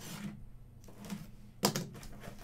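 Cardboard box being handled on a table: light scuffs and taps, then a sharper knock about a second and a half in.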